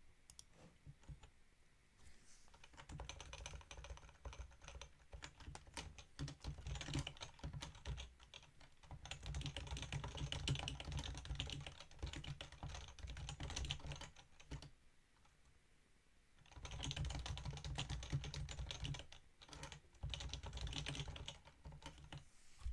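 Typing on a computer keyboard: long runs of rapid keystrokes, pausing for about two seconds past the middle before a second run.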